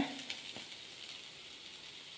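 Faint, steady sizzle of cheera thoran (chopped greens and grated coconut) frying in a nonstick pan, with a single light tick about half a second in.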